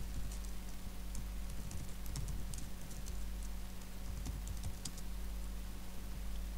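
Computer keyboard being typed on: irregular, separate key clicks, over a steady low hum.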